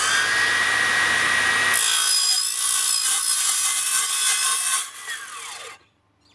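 Makita XGT 40V CS002G cordless cold-cut metal circular saw with an Efficut metal blade, cutting through stainless steel square tube with a loud, steady cutting noise whose tone shifts about two seconds in. Near the end the cut finishes and the blade's whine falls away quickly as the saw spins down.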